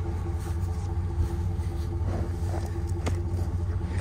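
A pickup truck's engine idling with a steady low rumble and hum. There is a faint knock about three seconds in.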